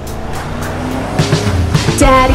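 Cartoon car sound effect: an engine that grows louder as the car drives up and pulls to a stop, with music underneath.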